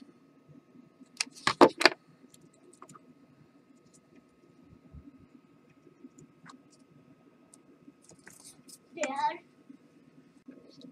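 A hot glue gun and small parts handled on a wooden workbench. A short clatter of several knocks comes about a second and a half in, then faint scattered taps. Near the end there is a brief vocal sound.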